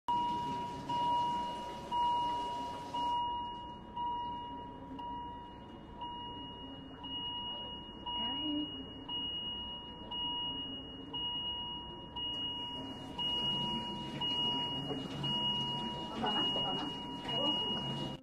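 Electronic medical monitor beeping, a steady pure tone repeating about once a second.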